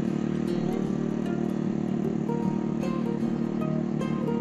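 Small petrol mini-tiller engine running steadily under load as it churns hard, dry soil. Background guitar music plays over it.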